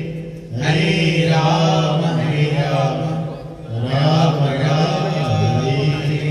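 Devotional mantra chanting: a voice holding long sung phrases, with short breaks about half a second in and again around three and a half seconds.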